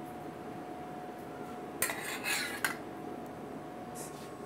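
A long metal spoon scraping and clinking in a small stainless steel pot as chile verde sauce is scooped out, with a burst of clatter near the middle, over a steady faint hum.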